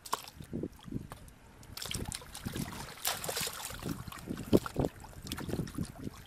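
Shallow muddy water splashing and sloshing as hands grope through it for fish, in irregular splashes, with one sharper splash a little past halfway.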